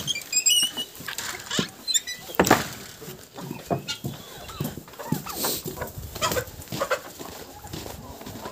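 Flock of chickens clucking and calling, with a few short high chirps near the start, over the scuffing footsteps of someone walking among them.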